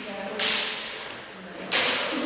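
Steel practice longswords clashing twice, about half a second in and again near the end, each sharp strike ringing out and tailing off in the echo of a large hall.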